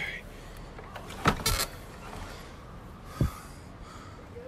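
An old wooden door knocking and rattling as it is pushed, with a quick cluster of sharp knocks about a second in and a single low thump near the end.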